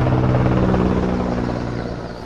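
Engines of a military armored vehicle convoy driving past, a steady engine drone that fades slightly toward the end.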